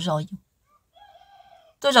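A rooster crowing faintly in the background during a short pause in a woman's narration: one call of under a second, starting about a second in. A woman's voice ends just before it and starts again at the very end.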